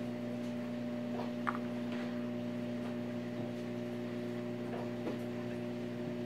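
A steady electrical hum with several held tones, and a faint click about a second and a half in.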